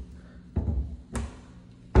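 Bathroom vanity cabinet doors being swung shut: low thuds a little after half a second in, a short click just after a second, and a loud knock near the end as a door shuts against the cabinet frame.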